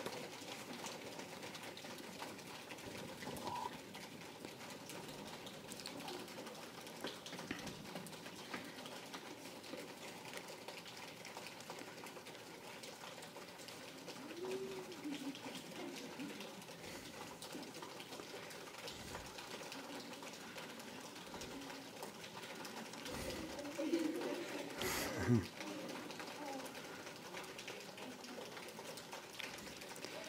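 Faint, steady patter of an improvised drum roll, made by the audience with their hands, under a hushed room with low murmuring. Brief soft voices come about halfway through and again about three-quarters of the way in.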